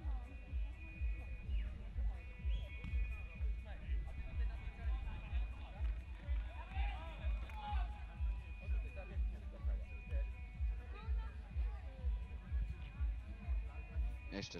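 Music with a steady bass beat, about two beats a second, with faint voices over it.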